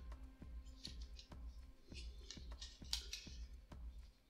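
A run of small, faint clicks and taps as model-kit parts are handled and pressed together on a locating pin, with quiet background music underneath.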